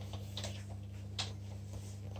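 Faint handling noise of an electric guitar plugged into an amplifier: a few short sharp clicks and taps, about half a second in and again just after a second, over a steady low electrical hum.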